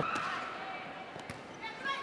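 A volleyball serve: one sharp smack of a hand striking the ball a little past a second in, over the low background noise of an arena crowd.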